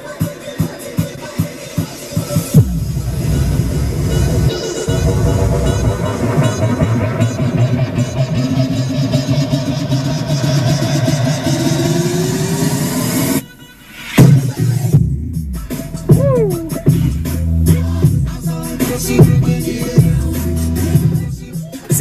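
Electronic dance music played through a newly installed Pioneer head unit and two 6-inch kick-panel speakers, heard inside the car. A clicking beat is joined by heavy bass about two and a half seconds in, a rising sweep leads into a short break a little past halfway, then the bass drops back in. The sound is clear and crisp, with strong mid-bass but very little sub-bass from the small speakers in their tight cavities.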